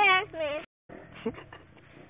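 Speech: a voice talking briefly, cut off suddenly by a short dead dropout about half a second in, followed by faint voices.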